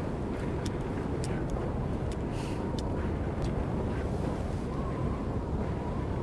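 Steady low rumble inside a car in a snowstorm, with a run of small wet clicks from kissing lips in the first three or four seconds.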